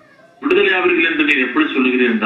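A man's voice preaching in Tamil, resuming after a brief pause at the start with a drawn-out, emphatic phrase.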